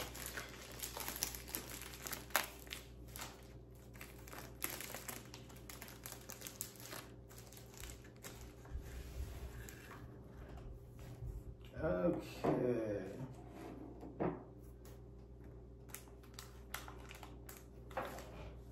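Plastic wrapping crinkling and rustling as a knife slits a cellophane bag and gingerbread pieces are handled, busiest in the first half. A short murmured vocal sound comes about twelve seconds in.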